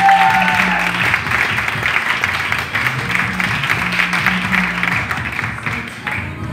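An audience clapping over background music with a low, repeating bass line; the applause stops near the end.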